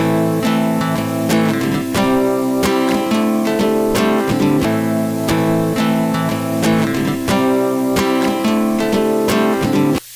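Solo guitar strumming chords, with a steady hiss of static noise running under the playing throughout: a recording contaminated with background noise.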